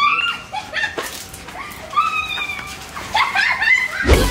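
High-pitched whimpering cries: a few short squeals that rise and fall in pitch, with gaps between them.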